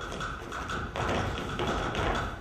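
Live pit-orchestra music for a stage musical, with a steady tapping beat of about four taps a second in the first half. The sound fills out with more bass from about a second in.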